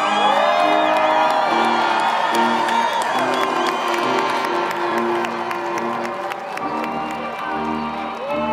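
Background music with a steady melody laid over a crowd of graduates cheering and whooping. The crowd is loudest in the first few seconds, with a whoop about half a second in.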